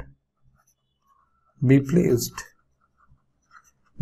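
Faint scratches and light taps of a stylus writing on a digital tablet, with a man saying one drawn-out word a little before halfway through.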